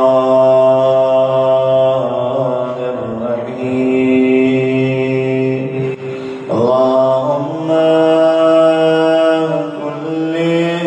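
A man chanting in long, drawn-out held notes, his pitch stepping to a new note a few times, with a brief break about six seconds in.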